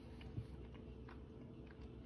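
Faint chewing and mouth sounds of a person eating a mouthful of creamy butter beans, with a few soft clicks and one slightly louder tick about half a second in.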